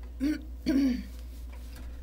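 A woman clearing her throat in two short pulses, the second louder and longer.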